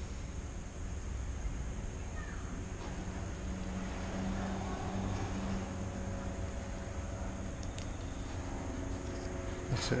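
Steady low background hum, with a faint droning tone through the middle seconds and a few faint ticks near the end.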